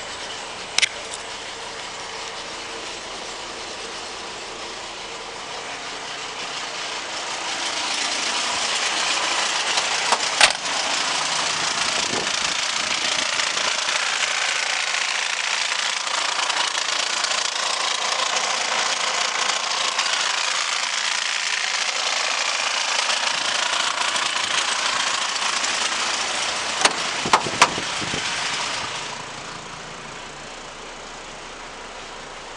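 Mercedes Sprinter 2.7 five-cylinder diesel engine running steadily. It grows louder and closer from about seven seconds in, while heard from the engine bay, then fades back down near the end. A few sharp clicks come near the start, about ten seconds in and near the end.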